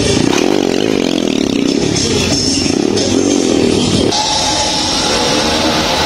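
A stunt motorcycle's engine revs unevenly, mixed with loud music from a sound system. About four seconds in, a steady held tone comes in.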